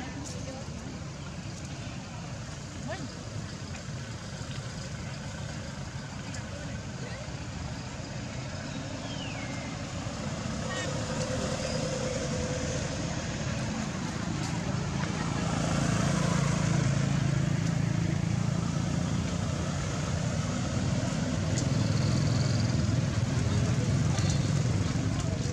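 A motor vehicle's engine rumbling, growing louder in the second half, over outdoor background noise with faint voices.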